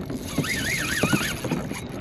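A person's high, wavering whoop, with no words, lasting a little under a second, let out while fighting a hooked fish from a kayak.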